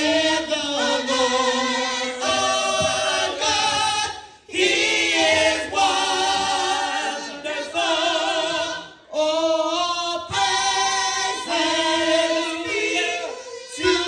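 A small mixed group of church singers singing a gospel song together into microphones, unaccompanied. They hold long, wavering notes in phrases, with brief breaks about four and nine seconds in.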